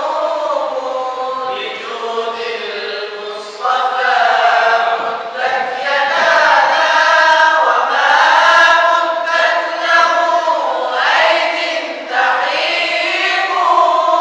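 A group of male voices reciting the Quran (qirat) together in unison with a lead reciter, a melodic chant of long held, gliding notes. A fresh, louder phrase begins about a third of the way in and again near the end.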